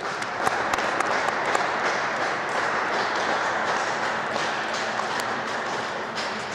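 Applause: many hands clapping in a dense, steady patter that starts suddenly and eases slightly near the end.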